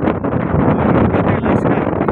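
Wind blowing across the microphone, a loud continuous rush with no break.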